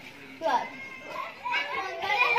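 Children's voices as they play together: chatter and high calls, with one loud call about half a second in and more voices joining near the end.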